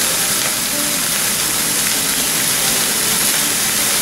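Diced pork and mushroom-and-dried-shrimp filling sizzling steadily in hot oil in a non-stick frying pan, the meat freshly added to the pan.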